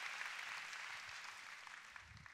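Large audience applauding, the clapping fading away over the two seconds.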